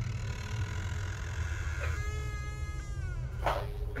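Creaking of a slowly opened door: long, pitched creaks, the second sliding slowly down in pitch about two seconds in.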